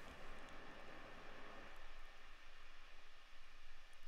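Steady background hiss with a low rumble, picked up by a dialogue microphone with the CEDAR sdnx noise suppression set to 0 dB of attenuation, so the noise is unprocessed. About two seconds in the low rumble thins out as the suppression is turned up.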